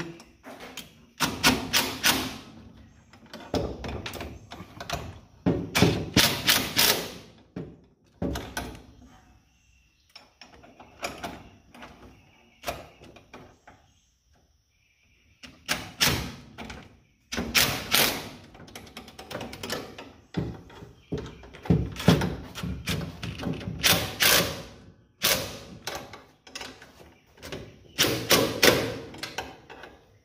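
Cordless impact driver running in repeated short bursts of a second or two with pauses between, tightening the brake booster's mounting fasteners at the firewall.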